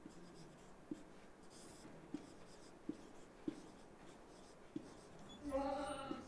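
Marker pen writing on a whiteboard: faint scratching of the tip, with small taps about once a second as each stroke begins.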